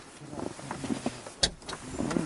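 Lada Niva's front door being opened: a short click at the start, then a sharp latch click about one and a half seconds in.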